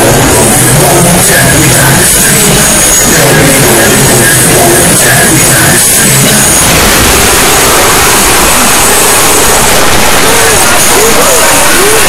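Dense, distorted roaring mixed with voice-like cries, held at near full volume.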